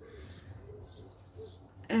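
Faint bird calls in the background, with soft chirps and a low cooing, over a quiet low hum.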